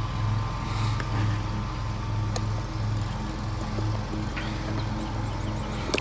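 An engine running steadily nearby, a low hum that swells and fades about twice a second.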